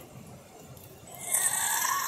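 A person's breathy, strained vocal sound, an effortful exhale or groan while straining to pull something out. It starts about a second in and grows louder.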